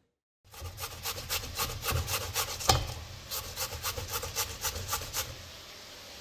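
Raw potato being grated on a flat metal hand grater over a steel pot, in quick, even scraping strokes, several a second, with one louder knock about halfway through. The strokes stop shortly before the end.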